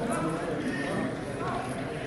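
Voices talking over the steady open-air background noise of a football match.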